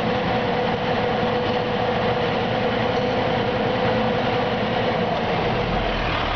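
The diesel engine of a 2000 Sterling day cab truck, throttled up above idle and running steadily at the raised speed, heard from inside the cab. The seller calls it a very healthy engine.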